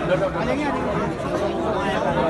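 Crowd of men talking over one another: continuous overlapping chatter with no single voice standing out.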